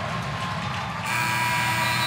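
Indistinct arena background noise. About a second in it changes abruptly to a steady electrical hum with several faint tones over the room noise.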